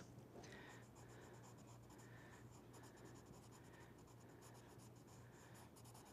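Faint scratching of a pencil drawing on paper in a few short strokes, over a low steady hum.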